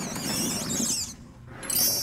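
Cartoon sound effects of a seal sliding over ice: a high swish for the first second, then, about a second and a half in, a bright, high shimmering sound that fades away.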